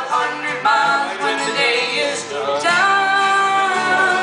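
A man and a woman singing a folk song in two-part harmony, drawing out long held notes, live.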